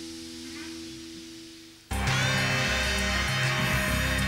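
A live rock band's final chord rings out on electric guitars and slowly fades. About two seconds in, it cuts abruptly to much louder programme theme music with a beat.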